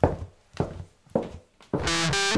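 Three evenly spaced percussive knocks of a count-in, a little under two a second, then distorted electric guitar and bass guitar come in together on the next beat near the end.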